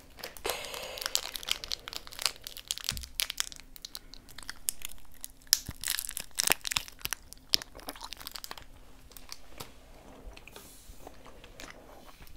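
Crinkling, crackling and tearing of an individual Hi-Chew candy wrapper as it is opened by hand, a dense run of sharp crackles. It is followed by quieter, sparser sounds of the soft fruit chew being chewed in the last few seconds.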